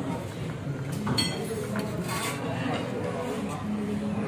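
Indistinct chatter of many diners in a busy restaurant dining room, with a couple of short clinks of cutlery on plates.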